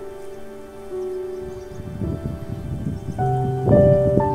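Background music of slow, sustained held notes and chords, joined about halfway through by a rough, crackling noise that grows louder toward the end.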